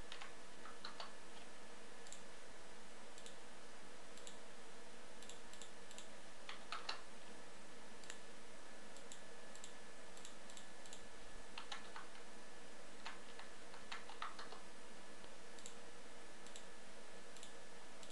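Computer keyboard keystrokes and mouse clicks, irregular single clicks and a few short clusters, over a steady background hiss.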